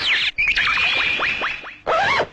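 Electronic sound effect: a burst of quick falling whistle-like glides, then a held high tone with rapid downward swoops beneath it, cut off sharply; a short rising-and-falling glide starts near the end.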